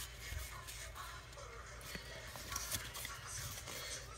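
Faint rustling and soft clicks of paper trading cards being handled and slid apart in the hands.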